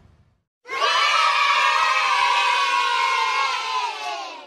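A group of children cheering in one long held shout, starting about half a second in and tailing off near the end, laid over the chapter title card as an edited sound effect.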